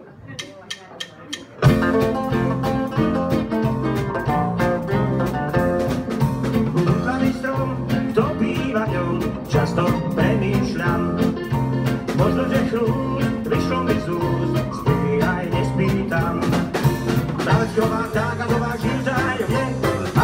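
Live band starting a swing song: a few quick clicks, then about two seconds in acoustic guitars, electric bass guitar and drum kit come in together and play the instrumental intro with a steady beat.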